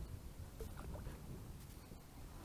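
A low, muffled rumble of a kayak on the water, picked up by a damp action-camera microphone. About half a second in come a few faint, short splashy sounds as a small bass is slipped back into the lake.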